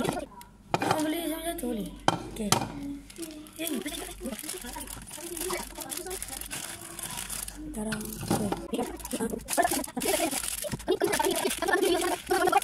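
Children's voices chattering, with the crinkle of instant-noodle packets being torn and handled and a few light clicks and knocks.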